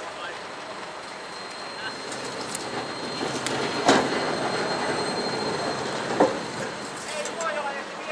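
A Helsinki Variotram low-floor tram rolling past close by, its rolling noise building as it nears. A thin steady high whine sounds through the loudest part, and two sharp clacks of the wheels on the rails come about four and six seconds in.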